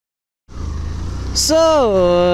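Silence, then about half a second in, the steady low rumble of a motorcycle being ridden starts suddenly, with a man's voice coming in over it near the end.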